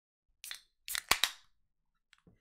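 Drink cans being cracked open: a short fizzing hiss about half a second in, then a louder hiss with two sharp pops of pull tabs around a second in, fading quickly.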